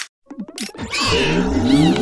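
A short click, then from about two-thirds of a second in, cartoon larva characters screaming in fright, a drawn-out cry rising in pitch, over music.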